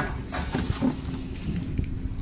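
XY GU 27B double-head napkin bag packing machine running, with a steady hum under several short mechanical clacks and knocks from its working parts.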